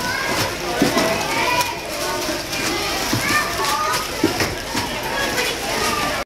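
Many people chatting at once, overlapping voices with no single speaker standing out, mixed with frequent short knocks and rustles.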